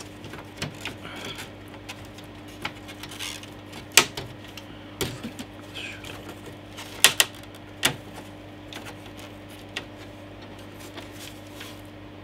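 Scattered plastic clicks and clacks as an Amiga 500 Plus motherboard is worked free of its plastic bottom case. The sharpest clacks come about four, five and seven seconds in.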